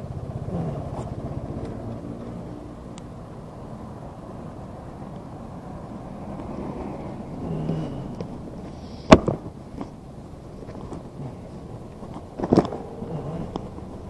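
An engine running briefly, then cardboard parcels being handled and lifted off a rack, with one sharp knock about nine seconds in and a few more clattering knocks near the end.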